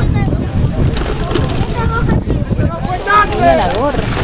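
Wind buffeting the microphone in a steady low rumble, with players shouting across a rugby pitch; a longer wavering shout about three seconds in is the loudest sound.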